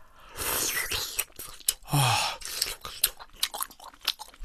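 A person chewing a mouthful of tteokbokki close to the microphone, with wet mouth smacks and clicks, and a short falling vocal sound about two seconds in.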